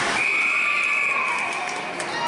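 Ice hockey referee's whistle: one long, steady blast of about a second and a half, stopping play as the goaltender covers the puck.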